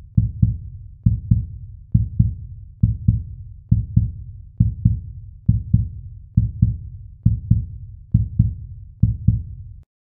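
Heartbeat sound effect: deep, low double thumps (lub-dub) repeating steadily a little under once a second, about eleven beats, cutting off just before the end.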